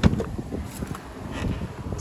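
Jeep Wrangler front door latch releasing with one sharp click as the handle is pulled and the door swings open. Wind noise on the microphone and small handling rattles follow.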